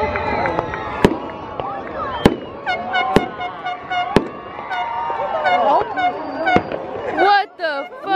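Fireworks going off: five sharp bangs spaced about a second apart, the last a little later than the rest.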